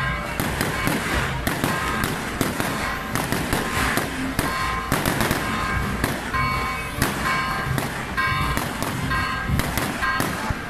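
A dense volley of firecrackers going off, several sharp bangs a second, unbroken through the whole stretch. Patches of ringing pitched tones sound among the bangs.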